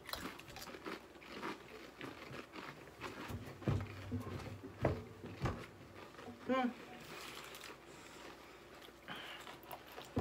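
Several people crunching and chewing pieces of a Paqui One Chip Challenge tortilla chip: a run of quick, irregular crunches through the first six seconds. A short closed-mouth "mm" about six and a half seconds in.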